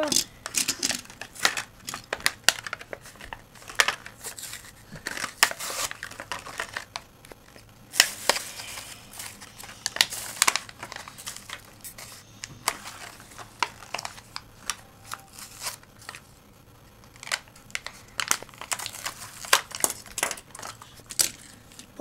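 Small die-cast toy cars being handled, with many sharp clicks and clacks as they are picked up and set down, mixed with crinkling and rustling of packaging.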